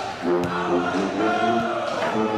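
A pep band's members singing together as a group, holding notes and stepping from one pitch to the next.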